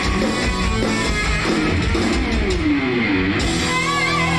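Hard rock band playing live, with electric guitar over a drum kit. Through the middle a line glides down in pitch.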